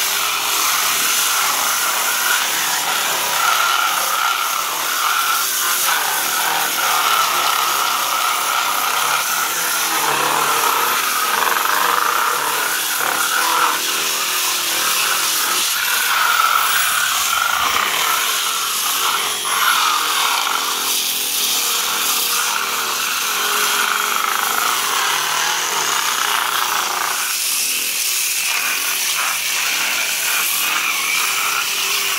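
Corded angle grinders fitted with sanding discs running steadily against peeling pool plaster: a continuous motor whine over the rasp of the disc grinding the surface.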